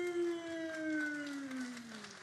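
A man's drawn-out chanted call in a sumo ring: one long held note that sinks slowly in pitch and fades, the traditional sung call of a sumo ring official.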